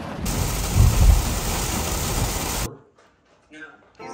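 Heavy rain pouring down, a dense steady hiss with a low rumble about a second in. It stops abruptly after about two and a half seconds.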